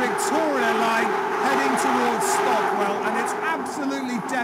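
London Underground Victoria line train running, heard from inside the carriage: a loud, steady roar with a constant whine through it, which a man's voice speaks over. It is described as absolutely deafening.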